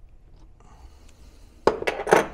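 Faint handling and ticking as a nut on a copper bus bar is turned by hand with a screwdriver-style nut driver, then a sudden loud clack with a short ringing near the end.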